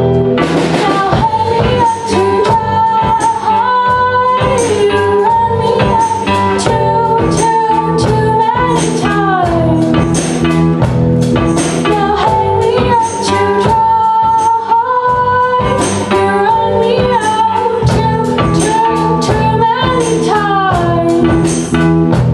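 A live rock band with a female lead singer, singing held notes that glide between pitches over electric guitar and a drum kit with regular cymbal strokes.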